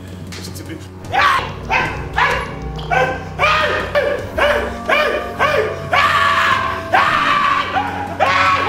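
A man yelling in terror, short repeated cries about two a second with a longer cry near the end, over steady background music.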